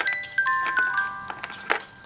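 A music box plays a melody of high, ringing single notes that overlap one another. A few sharp plastic clicks come through it, the loudest at the start and near the end, as the butterflies are slid along the wire bead maze.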